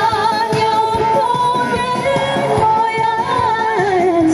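Korean trot song sung by several singers together over instrumental accompaniment with a steady beat, amplified through loudspeakers. The melody holds long notes with vibrato.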